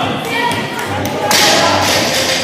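A 40 kg barbell loaded with bumper plates is dropped from overhead and lands on the gym floor with a heavy thud about 1.3 seconds in.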